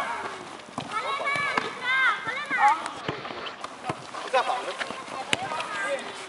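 Footballers shouting during play on a five-a-side pitch, with a few short sharp knocks of the ball being kicked.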